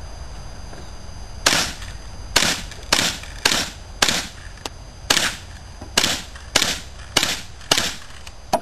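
A pistol fired ten times in quick succession in a timed string, the shots about half a second to a second apart with a slightly longer pause after the fifth.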